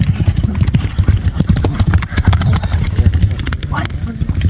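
Hooves of a pack of horses galloping and jostling on hard dirt ground: a rapid, irregular patter of hoofbeats over a low rumble.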